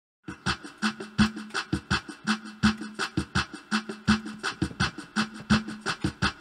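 Drums playing a steady beat on their own as a music track's intro, about three hits a second, starting just after a moment of silence.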